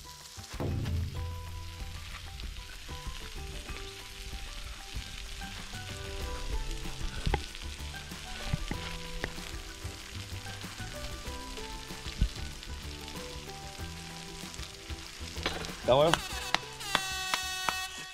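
Pork belly sizzling on a cast-iron pot-lid griddle, under soft background music of held notes. Near the end a rising tone, then a held tone, cuts in.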